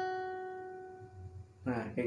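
A single picked note on a steel-string acoustic guitar, the second string at the seventh fret (F sharp), ringing out and fading away over about a second and a half. A man's voice comes in near the end.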